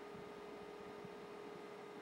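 Faint room tone: a low hiss with a thin, steady hum.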